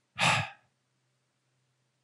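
A man's short sigh, one breathy exhale close on a headset microphone, fading out within about half a second.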